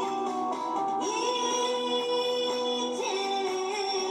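A woman singing a Korean song live into a handheld microphone over instrumental accompaniment, holding one long note from about a second in until about three seconds in.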